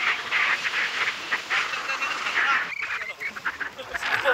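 Several young men laughing and whooping on a moving motorcycle, in short broken bursts, with wind rushing over the microphone.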